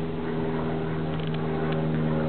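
Honeybee colony humming from the mass of bees crowding an opened hive, a steady even drone.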